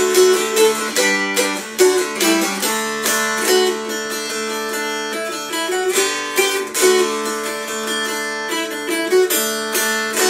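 Mountain dulcimer with a figured cherry hourglass body strummed with a pick, playing a lively Morris dance tune: a moving melody over steady drone strings, with even strumming throughout.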